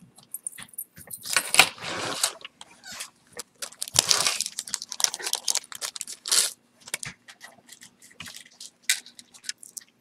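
Metal jewelry chains clinking and jingling as they are handled, with plastic bags rustling in longer stretches about a second and a half in and again around four seconds. A faint steady hum runs underneath.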